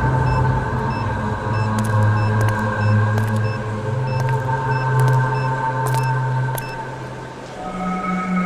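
Tense background score: a sustained low drone under held higher tones, with short high beeps about twice a second that stop near the end.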